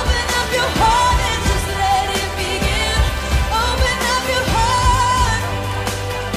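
Background pop music: a song with a sung melody over a steady drum beat.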